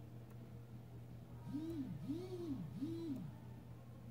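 Three low hoots in a row, starting about a second and a half in, each gliding up and then back down in pitch, over a faint steady hum.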